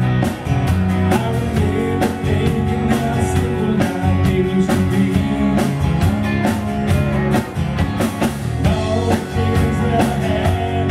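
Live band playing a country-rock song: electric guitar over a steady drum beat, with a man singing the lead vocal.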